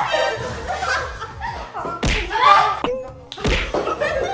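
Two women laughing and shrieking while playfully grappling, with two sharp slaps of hands, about two seconds in and again near the end.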